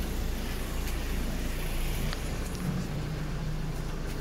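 City street ambience: a steady low rumble of road traffic, with a few faint clicks and a faint low hum in the second half.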